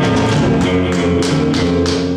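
Live band music: electric guitar holding sustained notes over drums, with cymbals struck several times.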